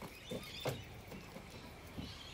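A few light knocks and scrapes, the loudest about two-thirds of a second in, as a large mulga snake (king brown) is handled and lowered into a plastic wheelie bin.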